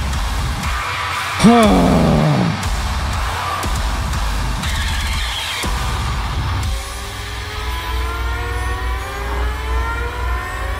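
Heavy metal track with a dense, crunchy, distorted low end. About seven seconds in it thins to several tones rising slowly together, a build-up. A man sighs "no" near the start.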